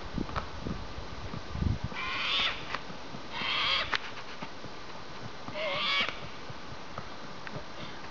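Horse's hooves striking a paved road in gait, with thumps in the first couple of seconds and lighter clicks after. Three short hissy bursts, about half a second each, are the loudest sounds, coming about two, three and a half and six seconds in.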